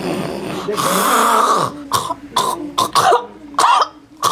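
A woman's low, rough groan breaks into a long, harsh rasping burst, then a run of short, sharp coughs. The minister takes these sounds for the voice of darkness leaving her.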